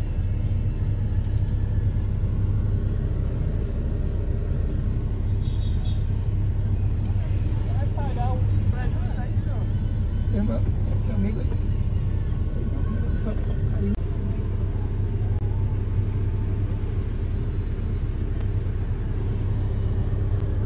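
Car engine idling, heard from inside the cabin as a steady low rumble.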